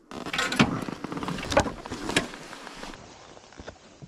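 Irregular crackling, scraping steps on a dry, stony dirt trail, with rustling, loudest in the first three seconds; after that a few fainter separate footsteps.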